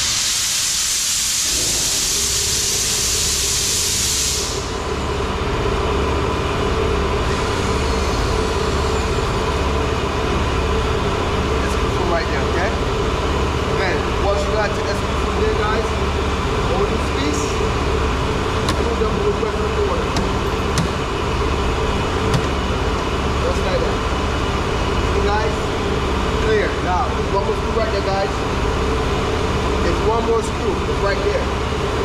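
A loud hiss for about the first four seconds, then a steady machine hum with a low, pulsing throb, over which come occasional faint clicks and knocks of hand work on car trim.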